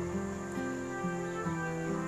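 Instrumental background music: a slow melody of held notes.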